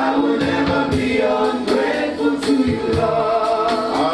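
Gospel worship music: a man singing long held notes into a microphone over a steady beat.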